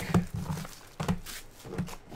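Light knocks and taps of a cardboard trading-card box being handled on a table, with two sharper knocks about a second apart.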